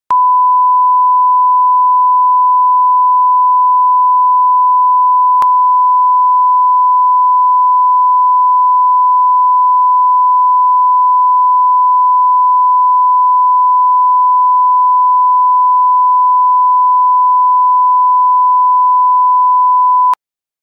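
Broadcast line-up tone played with colour bars: a single steady beep at the standard thousand-hertz reference pitch, held unbroken, with a faint click about five seconds in.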